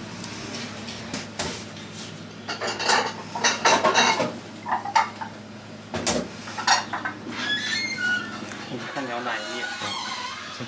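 Metal spoons and utensils clattering and clinking against bowls while a shaved-ice dessert is topped, with a run of sharp clinks through the middle few seconds, over a steady low hum.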